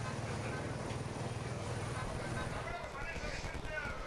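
Live race sound: a low, steady engine drone that fades after about two and a half seconds, with faint voices near the end.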